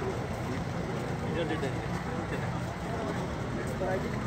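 Indistinct chatter of people talking over a steady outdoor background hum.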